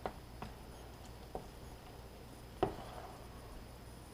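A hand stirring and squeezing wet, sticky bread dough in a plastic bowl, with a few soft separate knocks and squelches; the loudest comes about two and a half seconds in.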